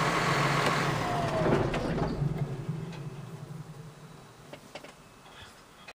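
John Deere 6150R tractor's six-cylinder diesel engine idling, heard from inside the cab, with the engine still cold. It dies away steadily over the last few seconds.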